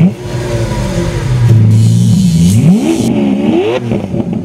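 A car engine revving: it holds a steady note for about two seconds, then is blipped up sharply twice, the pitch rising and falling each time.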